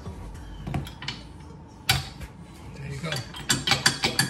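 A steel 5/8-inch hitch pin being pushed through a 2-inch trailer hitch receiver and the bike rack's shank to lock it down: scattered metal clicks and clinks, a sharper clink about two seconds in, and a quick run of rattling clicks near the end.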